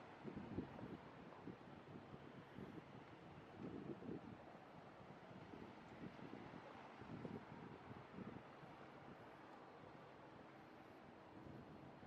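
Faint city street ambience: a low, steady hum of traffic, with irregular low rumbles over the first eight seconds or so.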